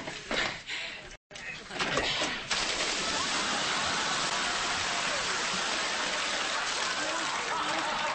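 Water spraying hard from a hose onto a person: a steady, even hiss that starts suddenly about two and a half seconds in and keeps going.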